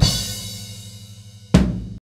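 Drum kit ending: a cymbal crash with a kick-drum hit rings out and fades over a held low note from the music, then a second crash accent lands about one and a half seconds in and the sound cuts off abruptly.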